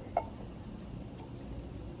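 Quiet outdoor background with a low, steady hum and one short faint click just after the start.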